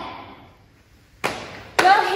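A sudden thump about a second in, fading over half a second, then a second sharp knock just before a woman starts speaking.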